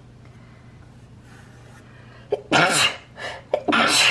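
A woman coughing hard, two loud bursts about a second apart after a couple of seconds of quiet, each with a quick breath in just before it. She has been sick.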